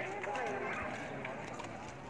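Voices of people talking at some distance, with footsteps on a stone-paved path.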